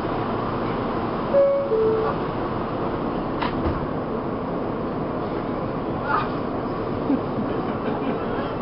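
Steady hum and rumble inside a New York City subway car, with the two-note falling door chime about a second and a half in, which marks the doors closing, and a sharp knock about two seconds later.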